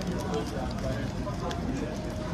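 Background voices of people talking over a steady low street rumble.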